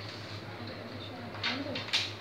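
Steady low hum of an office room, with a faint low wavering sound around the middle and two sharp taps near the end, from papers or objects handled on a glass-topped desk.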